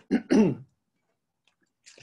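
A man clearing his throat: two short rasping bursts within the first second.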